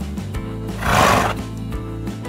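Background guitar music with a brief horse-whinny sound effect about a second in, the loudest moment.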